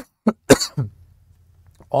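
A man coughing and clearing his throat: three short coughs in the first second, the last one the loudest.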